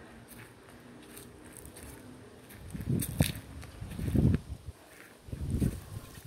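Footsteps through an overgrown yard, heard as dull low thuds about every second and a half from halfway in, with a sharp click among them.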